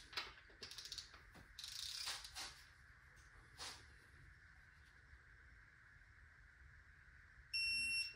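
A few faint clicks, then near the end a single steady high-pitched beep of about half a second from a GEARWRENCH electronic torque wrench. The beep signals that the cylinder-head bolt has reached its 50° target angle.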